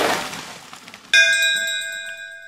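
A single bell-like ding about a second in that rings on and slowly fades. Before it, a rush of noise dies away.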